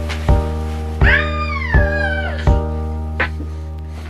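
Background music with held chords and a steady beat about every three-quarters of a second. About a second in, a high gliding cry rises and then falls for just over a second.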